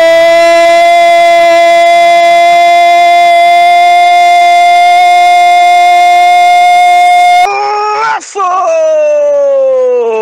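A male football commentator's drawn-out goal cry, "gooool", held loud on one steady note for about seven and a half seconds. After an abrupt cut in the audio, a second held cry slides down in pitch near the end.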